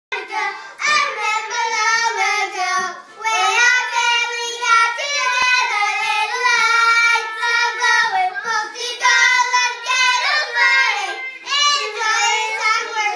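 Two children, a girl and a younger boy, singing a Chanukah song together with no instruments.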